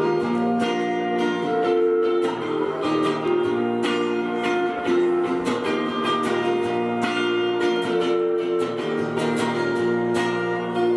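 Steel-string acoustic guitar played solo, a picked and strummed chord pattern with no singing.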